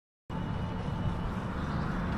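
Steady outdoor background noise with a strong low rumble and an even hiss, starting abruptly about a quarter second in.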